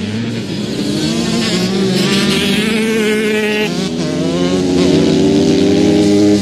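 Several motocross bikes running on a dirt track: overlapping engine notes revving up and dropping back as riders go through the gears.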